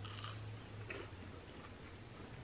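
Faint crunching of toast being bitten and chewed: a few soft, irregular clicks over a low steady hum.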